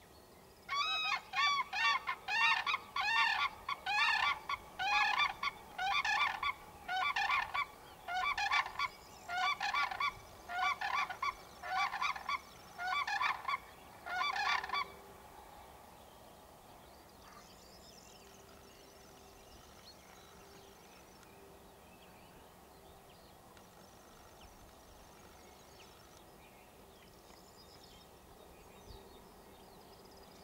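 A pair of common cranes calling: a run of loud, ringing, honking notes, about two a second, that lasts about fourteen seconds and then stops.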